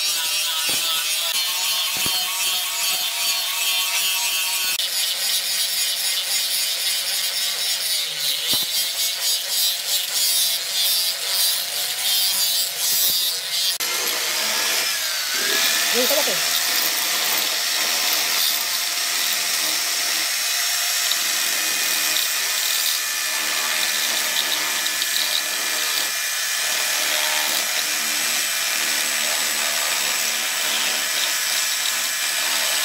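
Electric angle grinder grinding a steel machete blank. About halfway through it gives way to a small electric die grinder with a rotary burr, filing the edges of square holes cut through the steel blade: a steady high-pitched whine.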